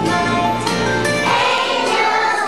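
A group of preschool children singing a song together, holding a long note near the end.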